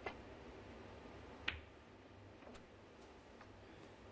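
Snooker balls clicking on the table: a sharp click right at the start and a louder one about a second and a half later, over a faint, quiet arena background.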